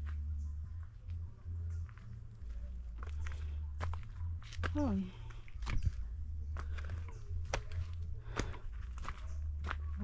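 Footsteps in sandals on a dirt mountain trail, an uneven step every half second to a second, over a steady low rumble. A breathless "oh" comes about halfway through.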